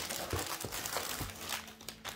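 Clear plastic packaging crinkling and rustling as a wrapped item is pulled out of a cardboard shipping box, with a few soft bumps against the box.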